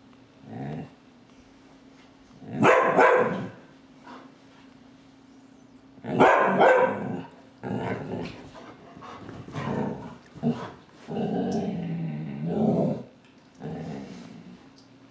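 Afghan Hound puppy barking in separate bursts, the loudest about three and six seconds in, with a longer drawn-out stretch near the end: territorial barking at something she has noticed.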